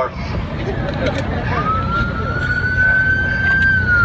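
Police vehicle siren winding up: a single wailing tone that rises about a second and a half in, holds high, then starts to fall near the end, over a steady low rumble.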